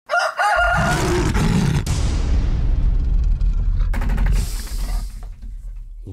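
Animated show-intro sting: a rooster-like crow in the first second, then a long, loud low rumble with a falling whoosh over it that fades out near the end.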